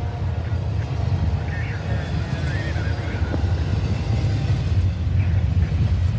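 Double-stack intermodal container cars rolling past: a steady low rumble of steel wheels on rail, with a few brief high squeals.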